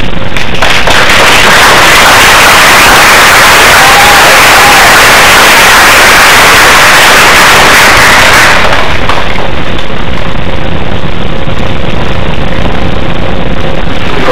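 Audience applauding, a loud crackling wash of clapping that dies away about eight or nine seconds in.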